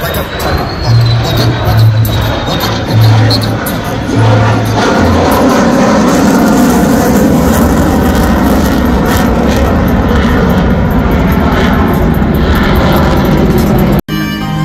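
Music with a heavy, stepping bass line for the first few seconds, then loud, steady jet engine noise from a Blue Angels F/A-18 Super Hornet flying overhead, from about five seconds in.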